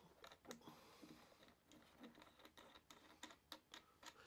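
Faint small clicks and ticks of a Dremel 490 dust blower being screwed by hand onto the threaded nose of a rotary tool.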